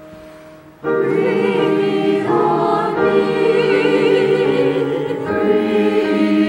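A church choir comes in loudly together about a second in and sings on with vibrato, just after a quiet held piano chord dies away.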